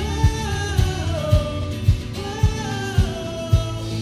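Live rock band playing: a singer holding long notes over electric guitar and drum kit, with a steady kick drum beat about twice a second.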